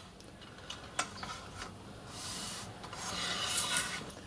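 Fine-tooth blade of a hand mitre saw cutting through a bundle of oak strips: two long saw strokes in the second half, the second one louder, after a light knock about a second in.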